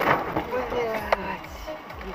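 Indistinct voices with music in the background inside a car, with a single sharp click about a second in.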